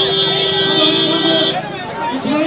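A vehicle horn held in one long steady blast over crowd chatter, cutting off about one and a half seconds in.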